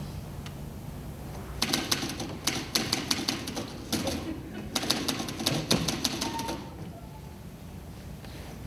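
Manual typewriter keys clattering in fast runs, in two bursts of about two seconds each with a short break between.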